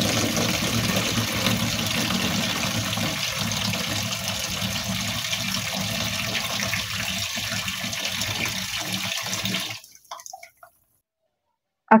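Kitchen tap running, its stream splashing into a plastic basin of water in a stainless-steel sink as the basin fills. The water sound is steady, then cuts off suddenly near the end.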